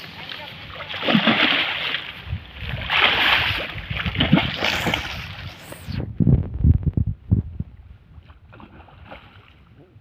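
A large hooked fish thrashing at the water's surface, splashing in several loud bursts through the first six seconds. After that come low knocks and thumps of handling close to the microphone.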